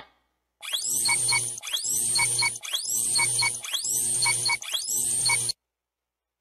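Electronic countdown-timer sound effect: five identical cues, about one a second, each a rising sweep that settles into a high steady whine with small beeps. It cuts off suddenly after the fifth.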